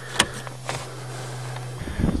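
A 2000 Chevrolet Cavalier's 2.2-litre four-cylinder engine idling steadily, heard from inside the cabin, with a sharp click about a quarter second in; the hum stops shortly before the end.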